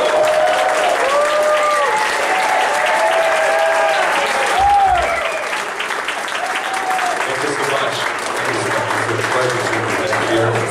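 Club audience applauding and cheering, with shouts over the clapping in the first half that then drop away.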